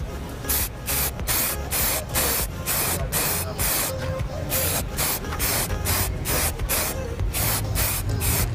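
Aerosol can of black spray paint, sprayed in a rapid series of short hissing bursts, about two or three a second, laying a second coat on a plastic motorcycle fairing.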